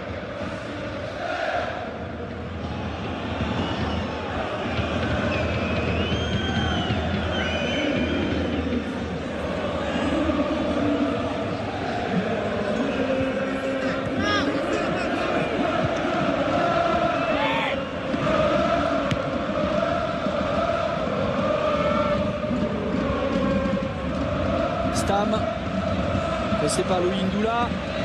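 Stadium crowd of football supporters chanting and singing together, a steady, unbroken noise of many voices.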